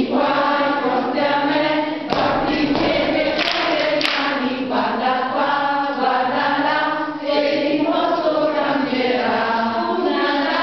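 A group of voices singing a song together. Two brief sharp clicks come about three and a half and four seconds in.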